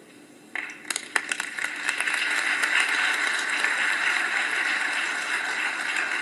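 Audience applauding: a few separate claps start about half a second in and quickly build into steady, dense applause.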